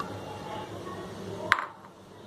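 A single sharp tap with a short ring about one and a half seconds in, a utensil knocking against the glass mixing bowl, over a faint steady low hum.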